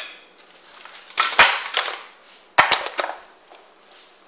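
A utensil knocking and scraping against a glass tray while macaroni is mixed in it, in two bursts of sharp clicks with scraping between, about a second and a half apart.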